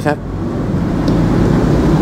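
Steady low rumble of a motor vehicle running close by, after a short spoken word at the very start.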